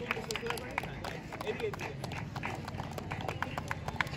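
Scattered light clapping from a few people, irregular single claps several times a second, with faint voices in the background.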